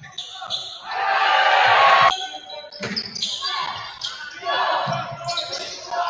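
Live basketball game sound in a gym: a ball bouncing on the hardwood court amid crowd noise that swells about a second in and again near the end.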